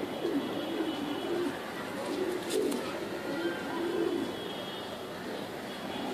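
Domestic pigeons cooing: a run of low, wavering coos repeating every second or so.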